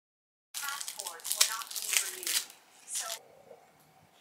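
A plastic straw wrapper on a small drink carton being torn open and crinkled, with quick crackles and clicks, starting about half a second in and stopping a little after three seconds, then the straw pushed into the carton. A quiet voice is mixed in.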